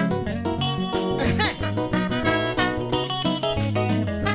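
Live band playing an instrumental passage with a steady beat: guitar over bass and drums, with trumpet and trombone.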